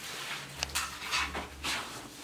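Hands rubbing and smoothing a wallpaper strip flat against the wall: a few short brushing swishes, with a light tap about half a second in.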